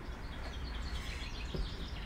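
Faint birds chirping in the background over a steady low hum.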